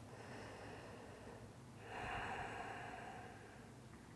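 One slow, faint breath, starting about two seconds in and lasting about a second and a half, over quiet room tone.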